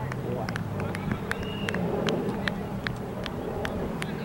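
Outdoor ambience: a steady low hum under faint distant voices, with many short, sharp high ticks scattered throughout.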